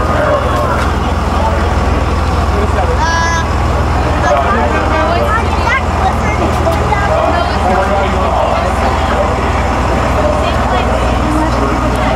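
A bus engine running low and steady as the bus passes at parade pace, under the scattered chatter of bystanders. About three seconds in, a brief high-pitched call rises above the chatter.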